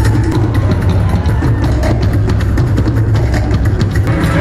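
Live band music driven by a drum kit and percussion, with a heavy, steady beat and bass.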